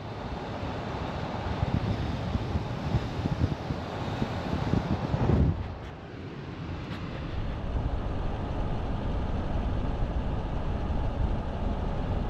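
Road and wind noise of a moving vehicle on rough, cracked asphalt: a steady rumble that swells unevenly in the first half, dips about six seconds in, then builds again.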